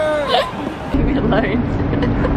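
A woman's voice exclaiming or laughing. About a second in, it gives way to a steady low hum with a rumble under it and a few brief vocal sounds.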